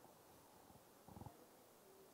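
Near silence: room tone in a pause between speech, with one brief faint sound a little over a second in.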